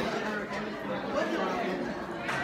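Indistinct background chatter of several voices in a large room, with no other distinct sound.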